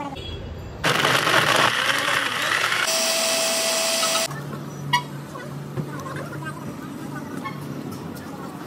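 Blender loud with ice and milk in the jar, grinding for about two seconds, then settling into a steady high whine as the mix turns smooth. The whine cuts off suddenly, leaving a faint low hum.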